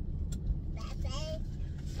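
Low, steady rumble of a car driving, heard from inside the cabin, with a small child's high voice calling out briefly about a second in.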